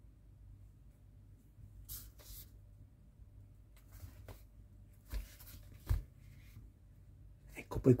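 Faint handling noise from hands turning a small plastic model wheel with a rubber tyre: a few soft rubs and small ticks, then two dull bumps about five and six seconds in. A word of speech comes right at the end.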